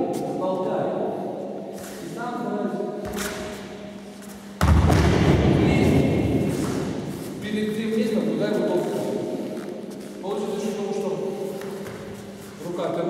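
A person being thrown and landing on the gym mats: one sudden heavy thud about halfway through, the loudest sound, with men's voices talking before and after it.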